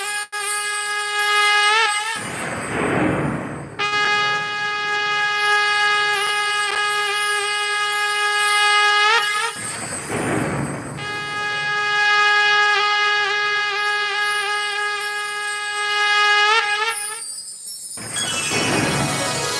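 A shrill wind instrument holds long, steady, loud notes, each ending in a quick bend. Its playing is broken by a crashing percussion burst about two seconds in and again near the middle, and the held note stops shortly before the end.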